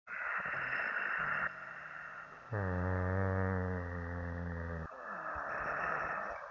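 A man's voice making a long, low, steady 'hmm' that lasts about two seconds, with hissing noise before and after it.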